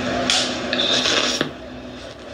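Close rubbing and scraping handling noise, as the recording phone or camera is being adjusted, ending in a sharp click about a second and a half in.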